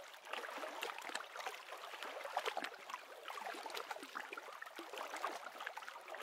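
Small wavelets lapping at the water's surface: a steady, fine patter of little splashes and gurgles.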